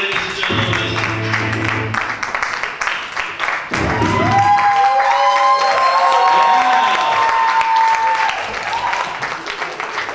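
Audience applauding over loud music, with long held notes through the middle.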